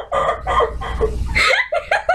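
A woman laughing hard in a rapid run of short, high-pitched bursts, with brief breaths between fits.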